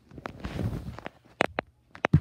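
Phone handling noise: the microphone rubbing against a shirt as the phone is moved, a rustle followed by two sharp knocks about a second and a half in.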